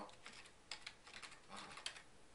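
Faint typing on a computer keyboard: a string of light, irregular key clicks.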